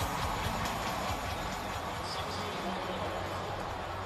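Stadium crowd noise: a steady, even murmur with no cheering peaks.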